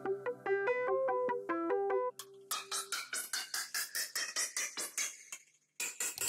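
Sequencer synth parts of an electronic track playing. First comes an arpeggio of short plucked synth notes for about two seconds, then a faster run of short, bright synth stabs that fade out, with a brief gap just before the end.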